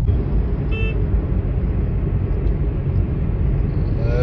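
Steady low rumble of a car driving along a highway, heard from inside the car, with one short high-pitched beep just under a second in.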